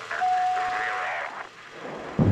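A voice with a radio-link quality during a rocket launch countdown, with a single steady beep lasting about a second.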